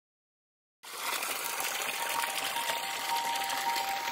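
Water gushing from a pipe outlet into a pond, a steady rushing that cuts in suddenly from silence about a second in, with a faint steady tone under it.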